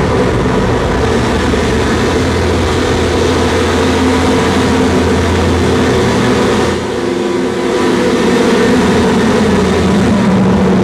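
Harsh noise music from a live electronics rig of effects pedals and mixers: a loud, dense wall of hiss with droning low hum tones. It thins briefly about seven seconds in, then fills back out.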